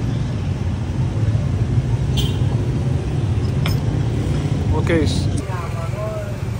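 Street traffic with a steady low rumble, broken by a few brief clicks.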